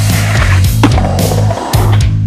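Skateboard grinding down a metal stair handrail, a continuous scraping with a sharp knock a little under a second in, over loud heavy rock music.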